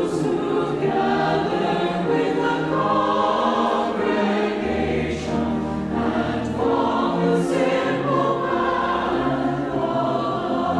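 Mixed choir of men's and women's voices singing held chords, with a low note sustained beneath the voices from about five to seven seconds in.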